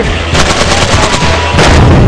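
Rapid automatic gunfire, shot after shot in quick bursts, over a steady low rumble.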